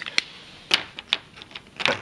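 A few light, sharp clicks at irregular intervals, about five in two seconds, with quiet between them.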